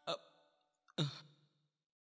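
Two brief wordless vocal sounds from a man, about a second apart, the second falling in pitch, with near silence between them.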